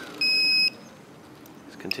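A single high-pitched electronic beep, about half a second long, from the quadcopter's flight controller.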